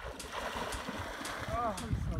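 Water splashing as a swimmer moves through calm water, with a short "ah" from a man's voice near the end.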